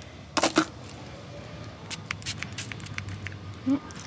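Hand sanitizer squirted from a pump bottle and worked between a small child's hands: two short sharp squirts about half a second in, then a run of small wet clicks as the gel is rubbed in.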